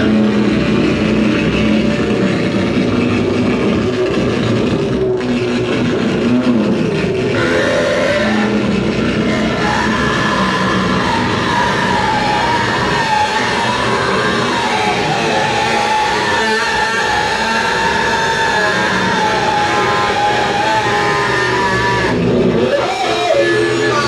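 Live harsh noise electronics played from tabletop effects gear: a loud, unbroken wall of distorted noise. A wavering, siren-like whine that rises and falls comes in about halfway through.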